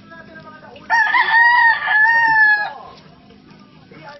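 A rooster crowing once: a single loud crow of about two seconds, starting about a second in.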